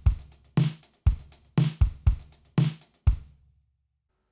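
Logic Pro's Liverpool acoustic drum kit playing a programmed step-sequencer groove at 120 BPM: kick and snare with sixteenth-note closed hi-hats. The pattern stops a little after three seconds in and the last hit rings out briefly.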